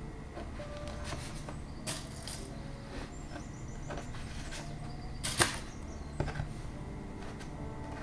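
Hands pinning two layers of linen together with dressmaker pins: a few light clicks and taps, the sharpest about five seconds in, over a steady low hum.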